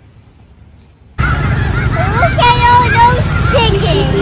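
Loud street traffic noise with a steady low rumble that starts suddenly about a second in. Pitched calls that glide and bend run over it.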